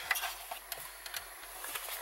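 A few faint, scattered small clicks and light rustling from hands working around the steering column and ignition.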